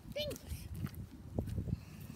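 A brief, soft laugh over low rumbling handling noise on the microphone.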